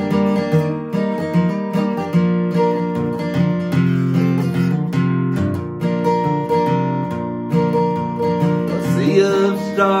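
Steel-string acoustic guitar playing an instrumental break of chords, with a man's singing voice coming back in near the end.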